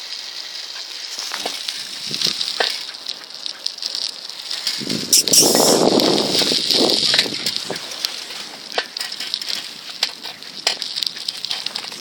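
A bicycle being ridden: a steady crackle of tyres and drivetrain with scattered sharp ticks from the chain and derailleur. A louder rushing noise lasts about two seconds around the middle.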